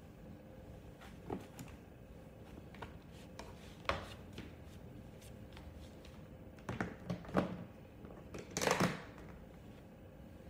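Clear plastic storage container and its lid being handled: a few light knocks at first, then a cluster of plastic clicks and knocks as the lid is pressed on and the box is picked up, loudest shortly before the end.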